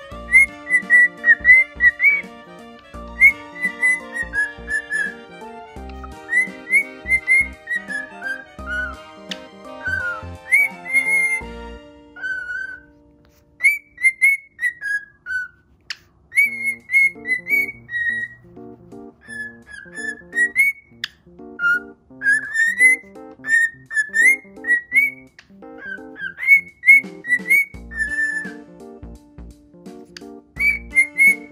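Male cockatiel whistling a song: a long run of short, clear whistled notes, many sliding up or down in pitch, with a short break a little before the middle.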